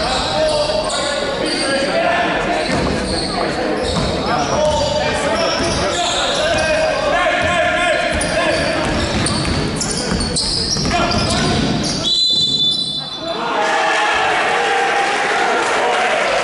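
Indoor basketball game: a ball dribbling, sneakers squeaking on the hardwood court and players calling out, echoing in a large hall. A referee's whistle sounds for about a second, twelve seconds in, stopping play.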